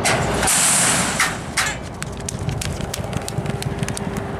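Horse-race starting gate springing open with a sudden loud clatter and a rush of hissing noise, then two sharp metallic bangs about a second later. After that comes a fast, even run of sharp hoofbeats as the horses gallop away on the dirt track.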